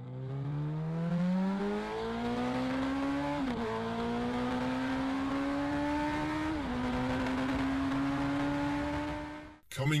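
Sport motorcycle engine accelerating hard through the gears: the pitch climbs steadily, drops at an upshift about a third of the way in and again about two thirds in, then climbs once more before the sound fades out near the end.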